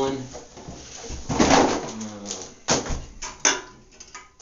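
Clutter being cleared off a tiled bathroom floor by hand: a cardboard box scraping and rustling, then a few sharp knocks as cans and a glass bottle are picked up and set down. A short low mumble comes between them.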